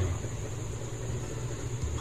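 Steady low background hum with a faint, even hiss: room noise in a pause between speech.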